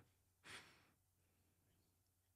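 Near silence: room tone, with one short, faint breath out about half a second in.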